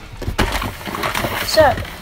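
Cardboard box and packaging being handled as a Lego set is unpacked: a run of rustles and knocks over the first second and a half.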